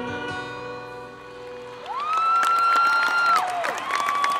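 A rock band's last chord, with guitars and pedal steel guitar, ringing out and fading. About halfway through, audience applause breaks out, with one long rising and falling 'woo' of cheering over it.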